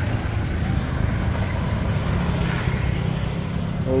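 Steady low engine and road rumble of a songthaew baht bus (a converted pickup truck), heard while riding in its open back through traffic.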